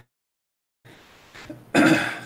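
Silence for the first second, then a man clears his throat, loud and sudden, near the end.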